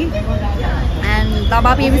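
Mostly speech: a woman's voice talking, over a steady low rumble of background noise.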